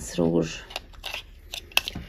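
Several light, sharp clicks of plastic lipstick tubes and caps knocking together as they are handled.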